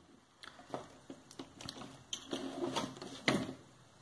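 Several scattered small plastic clicks and light knocks with faint rustling, the sharpest near the end: wire-harness connectors being unplugged from an air conditioner's inverter control board and the wires moved aside.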